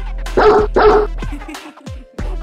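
Two short dog barks, close together, about half a second in, over electronic dance music with a steady bass beat. The music briefly drops out near the end.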